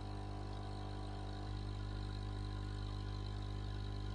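Steady low electrical hum with a row of even overtones, typical of aquarium equipment such as a filter or air pump running, growing slightly louder about one and a half seconds in.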